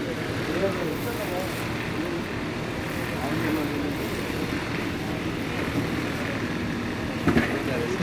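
Steady background noise of a busy market shop, with faint voices talking in the distance and a couple of sharp clicks near the end.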